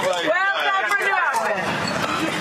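People talking outdoors, voices picked up by a field microphone without any clear words.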